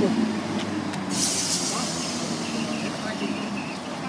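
Class 319 electric multiple unit drawing to a stop at the platform: a steady low hum from the train, with a short hiss of air from the brakes about a second in.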